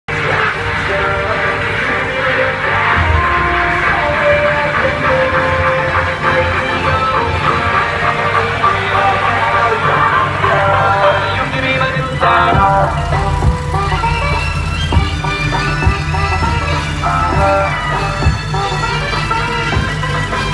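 Loud dance music played through the large truck-mounted speaker stacks, with a heavy, steady bass that gets stronger about twelve seconds in.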